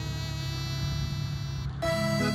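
Small tractor's engine running steadily as a low hum through a brief lull in the background music, which comes back near the end.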